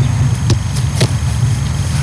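Steady low rumble of wind on the microphone outdoors, with two sharp knocks about half a second apart near the middle.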